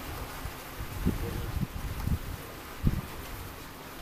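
Wind buffeting the microphone on an open boat deck, irregular low gusts over a steady hiss of wind and water.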